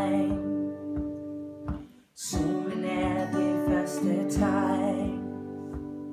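Two acoustic guitars strumming a slow song together, with a short break about two seconds in before the strumming picks up again.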